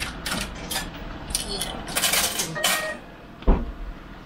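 Car park pay machine handling a ticket and coin payment: a series of short mechanical rattles and clicks, then a single thump about three and a half seconds in.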